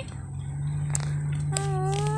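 Vehicle engine idling with a steady low hum. Near the end a high-pitched voice calls out one drawn-out, slightly rising note.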